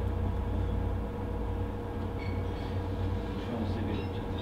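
Steady low room rumble with a faint constant hum, and faint scattered higher sounds in the second half.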